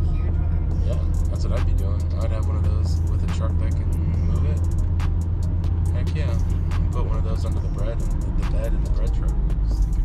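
Steady low engine and road rumble inside a moving car's cabin, easing about three-quarters of the way through, under music with a voice.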